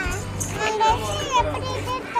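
Background song: a sung vocal line over a steady bass beat.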